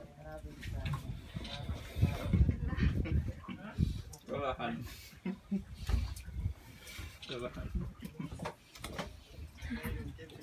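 Indistinct voices talking, with a low rumble underneath.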